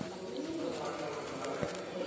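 A pigeon cooing in low, wavering notes.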